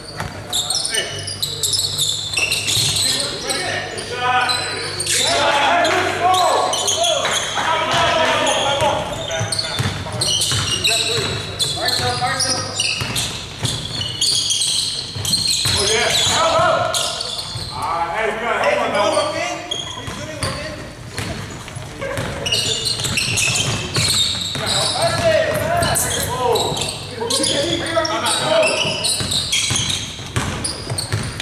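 Basketball being dribbled on a hardwood gym floor amid players' voices calling out. Everything rings with the echo of a large gymnasium.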